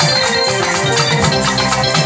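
Bajana devotional music: an electronic keyboard playing sustained melody and chords over a fast, steady beat of shaken or struck hand percussion.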